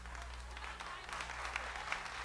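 Audience applauding fairly quietly: a dense patter of many hands clapping, over a low steady hum.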